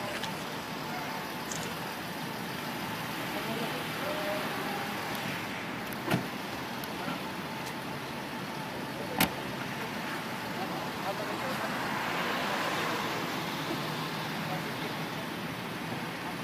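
Road and traffic noise with faint voices, broken by two sharp thuds about six and nine seconds in, typical of car doors being shut. A swell of passing-vehicle noise rises and fades about twelve seconds in.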